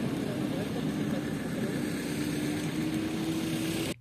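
A vehicle engine idling steadily under an even hiss, with a faint hum that rises slightly in pitch.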